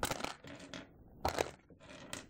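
Small polymer clay charms clinking and rattling against each other and the clear plastic compartments of an organizer box as they are handled. There are two short bursts, one right at the start and one a little past a second in.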